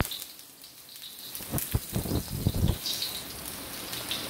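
Julienned ginger sizzling in hot oil in a stainless steel wok with a steady hiss. A wooden spatula scrapes and knocks against the wok in a quick cluster of strokes from about one and a half to three seconds in.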